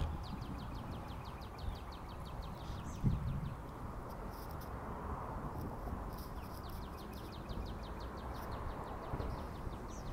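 Quiet outdoor background with a bird giving two runs of rapid, short high chirps, and a single dull thump about three seconds in.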